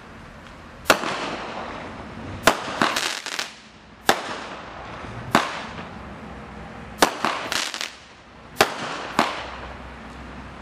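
DM246 Snafu consumer firework going off: a sharp report roughly every one and a half seconds, some followed by quick runs of crackling pops, over a steady hiss.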